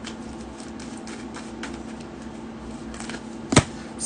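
Hands shuffling a deck of tarot cards, with soft, irregular flicks of the cards, then a single sharp snap of a card about three and a half seconds in.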